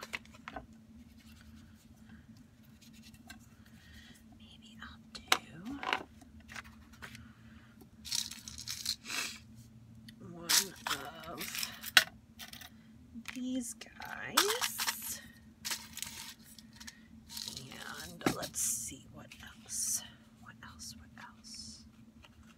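Crafting handling sounds on a desk: paper rustling and scraping, with sharp clicks and clinks of small metal fasteners in a plastic tub and of stacked metal tins, in irregular bursts.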